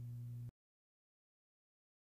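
A faint, steady low hum that cuts off abruptly about half a second in, followed by dead silence.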